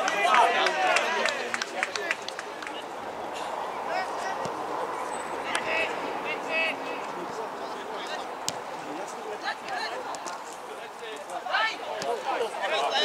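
Football players shouting to one another on the pitch during play, over a steady open-air hiss, with a few sharp knocks scattered through it. The voices are loudest at the start and again near the end.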